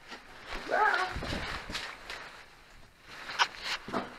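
Footsteps climbing stone stairs: scuffs and a few sharp steps, the last ones about three and a half seconds in, with a brief bit of a man's voice about a second in.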